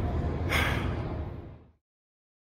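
A short, sharp breath about half a second in, over low steady room hum; the sound then fades out to silence shortly before the end.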